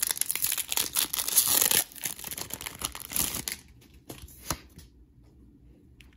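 Foil Pokémon booster pack being torn open and crinkled, dense for about two seconds, then lighter crinkling with a few sharp clicks.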